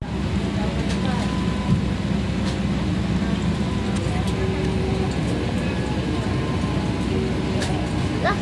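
Steady hum and rush of air inside a parked airliner's cabin, with faint passenger voices.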